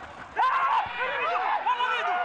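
Several men shouting at once, a loud burst of overlapping yells that starts suddenly about half a second in and carries on, from players on the pitch reacting to a goalmouth chance.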